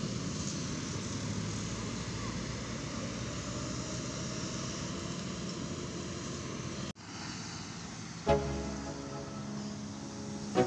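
Road traffic rounding a bend: cars, a pickup truck and motorcycles passing, a steady wash of engine and tyre noise. The noise cuts off abruptly about seven seconds in.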